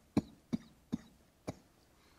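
A man coughing four short times, about half a second apart: a lingering cough that is almost gone.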